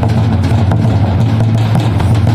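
Drums played together for dancing: a large kettle drum and double-headed drums beaten with sticks, in a dense, loud rhythm over a steady low hum.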